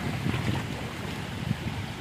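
Shallow stream water running over rocks, with wind rumbling on the microphone and a light knock about one and a half seconds in.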